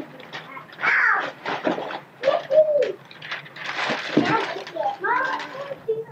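Indistinct voices, with short gliding, coo-like vocal sounds, and a rustle of wrapping paper about four seconds in.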